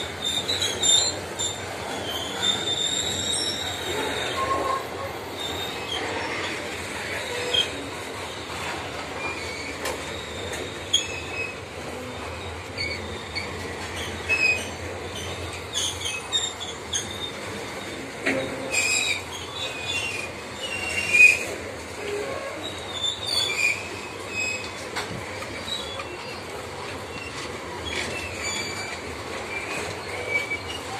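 Loaded steel grain hopper wagons of a long freight train rolling slowly past at reduced speed, over a steady rumble. The wheels give short high-pitched squeals again and again, with scattered clanks and knocks, the sharpest a little past two-thirds of the way through.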